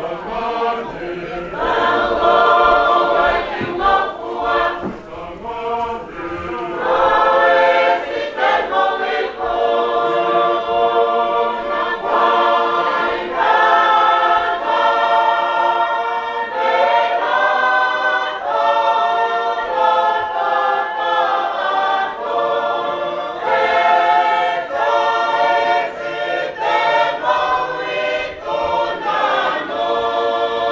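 A choir singing a hymn unaccompanied, in harmony, with long held chords that change every second or two.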